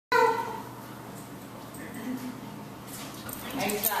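A German Shepherd gives one short, high whine at the very start. A person talks and laughs near the end.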